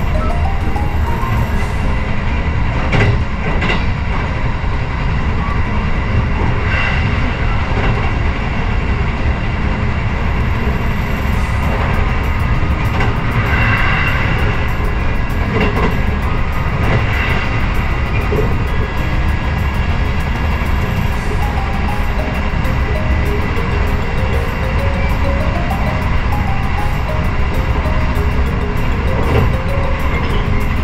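Steady rumble of a moving passenger train heard from inside the carriage, with a few brief knocks from the running gear.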